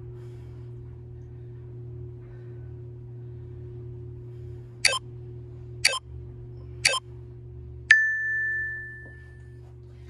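Workout interval timer counting down: three short clicks a second apart, then a single bell-like ding that rings out and fades over about a second and a half, marking the end of a timed exercise interval. A steady low hum runs underneath.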